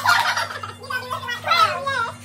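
A woman shrieking with laughter: a loud outburst at the start and a second, wavering one falling in pitch about one and a half seconds in.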